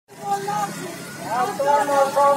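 Marchers chanting a protest slogan, with words held on long drawn-out notes.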